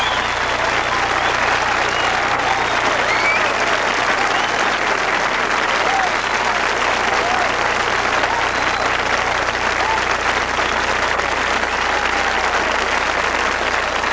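Audience applauding steadily, with scattered cheers through the clapping.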